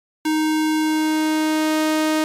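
Harmor software synthesizer playing one held note, starting about a quarter second in, from a square-wave oscillator. A little under a second in, its tone fills out with added harmonics as the mix knob blends in the saw wave.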